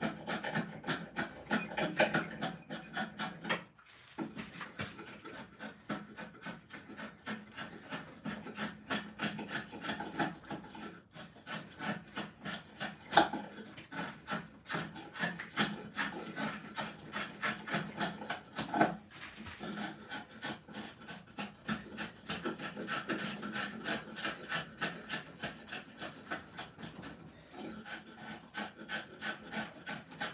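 Drawknife shaving a wooden axe-handle blank: a rapid run of short scraping cuts with a few brief pauses, and a couple of sharper clicks as the blade bites.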